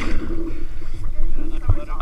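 Sea water sloshing and wind buffeting a camera held at the surface, over a steady low engine hum.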